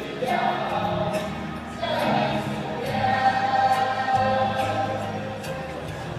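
A large group of voices singing together as a choir, ending in a long held note through the second half.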